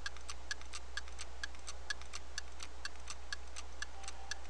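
Rapid, evenly paced mechanical ticking, about four ticks a second, starting abruptly and keeping a steady beat over a faint low hum.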